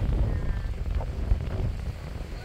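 Wind buffeting the microphone, a steady uneven low rumble.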